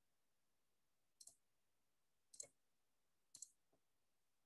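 Computer mouse button clicking three times about a second apart, each a short press-and-release click, with a fainter tick near the end.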